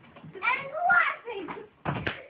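Children's voices talking or exclaiming, then a single sharp thump of an impact near the end.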